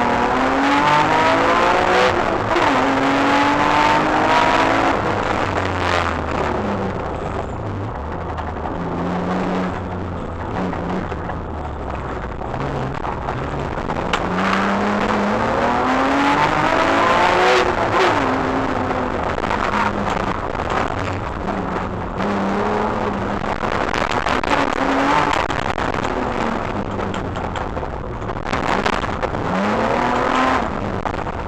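BMW E36 race car's engine heard from inside the cabin on track, pulling up through the revs in repeated rising runs broken by sudden drops at gear changes, with quieter stretches where it eases off.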